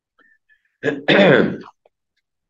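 A man clearing his throat once, about a second in, in two quick parts, the second longer and louder.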